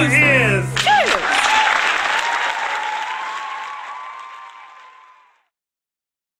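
The last sung note of a song with accompaniment breaks off under a second in, and audience applause with a falling vocal whoop takes over. The applause fades out steadily to silence a little after five seconds.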